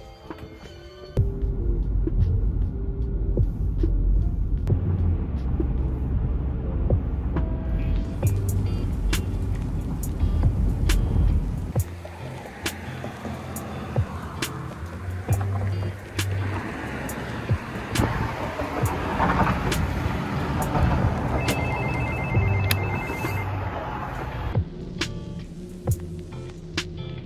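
Background music over low car-cabin road rumble for the first half. After that comes lighter street ambience, and near the end a door-intercom buzzer sounds a rapid pulsed electronic two-note tone for about two seconds.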